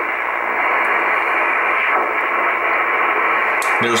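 Static hiss from an Icom IC-R8500 shortwave receiver in upper sideband as its tuning knob sweeps through the 13 MHz utility segment, with no signal on frequency. The hiss is steady, narrow-band and muffled, with nothing above the receiver's audio passband.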